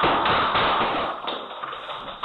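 Rapid gunfire recorded by a home security camera's microphone. It is a dense, distorted barrage of repeated cracks that slowly fades.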